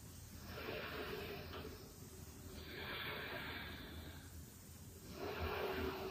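A woman breathing slowly and audibly: three soft, hissing breaths of about a second each, a couple of seconds apart.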